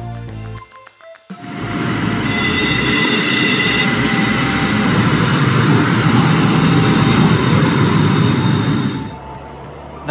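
A Portland MAX light rail train running along an underground station platform: a loud, dense rumble that rises about a second in, with a high whine for a couple of seconds, and drops away about a second before the end. Background music plays briefly at the start.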